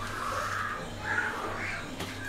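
A person making short, raspy wordless vocal sounds, three times, with a low steady hum underneath.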